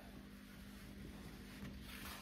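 Quiet room tone with a faint steady low hum.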